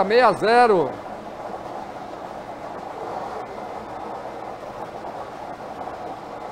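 Numbered balls tumbling in a clear bingo ball globe, a steady even noise that follows the last of a called number in the first second.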